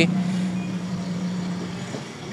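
A steady low engine hum that fades away over about two seconds.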